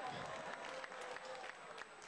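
Audience applauding, with distinct individual claps and voices mixed in.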